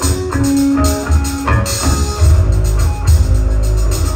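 Live rock band comes in loudly all at once: electric guitar notes over bass guitar and drums, with steady cymbal strikes keeping time.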